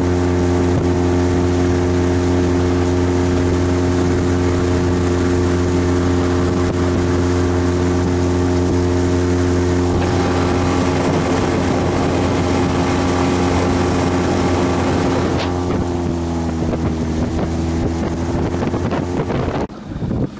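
Outboard motor driving an inflatable PVC boat at speed: a steady engine note with water and wind noise. About sixteen seconds in, the engine note drops lower, and the sound falls away near the end as the boat slows.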